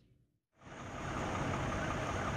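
Steady road traffic noise at a highway interchange, fading in about half a second in after a brief dead silence.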